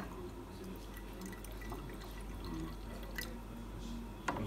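A few faint, short clicks and taps from a Yixing clay teapot being handled, over quiet room sound.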